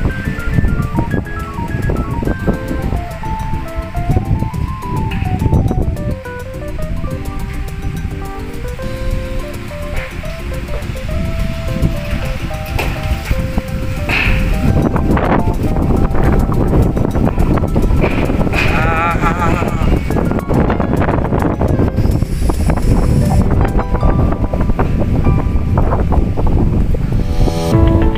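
Background music with a stepping melody, over strong wind gusting against the microphone as a pre-monsoon storm blows in. The wind noise grows louder about halfway through.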